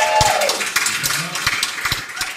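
A held final sung note ends just after the start, then a small audience applauds, with scattered voices among the claps, fading toward the end.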